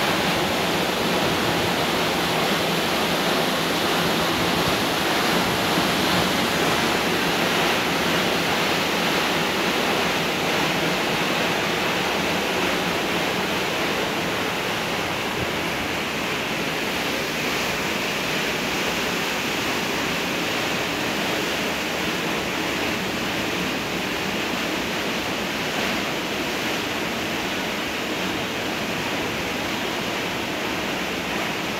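Steady rushing of water flowing through a dam barrage, an even roar without breaks that eases slightly after the first third.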